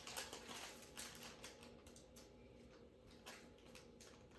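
Faint crinkling and soft ticks of small plastic candy-kit powder packets being picked at and torn open by hand, a few scattered sounds, most in the first second.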